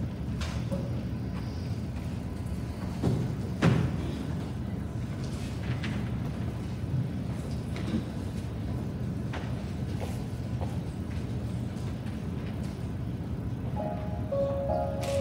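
Low steady rumble of a large room, with scattered knocks and thumps as a choir gets up and settles in the choir loft; the loudest knocks come about three to four seconds in. Music starts just at the end.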